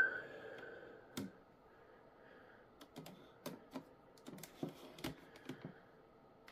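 Faint fingernail clicking and picking at the edge of a phone, trying to lift the corner of the old screen protector: a sharp click about a second in, then a scatter of small irregular ticks.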